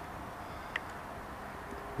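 Steady low background room noise with one brief, faint high chirp about three-quarters of a second in.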